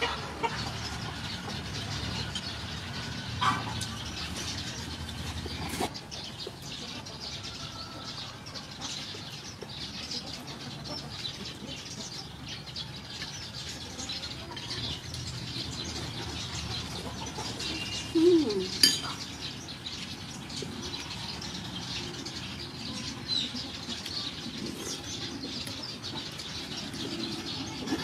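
Outdoor background of birds calling, with scattered short clicks of a spoon and the mouth sounds of someone eating. A louder pair of sounds comes a little past halfway.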